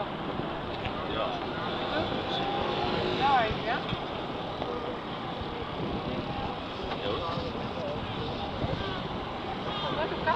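Outdoor city-square ambience: a steady wash of background noise with wind on the microphone and voices talking.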